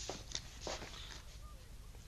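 Quiet studio room tone: a steady low hum and hiss, with two faint clicks in the first second.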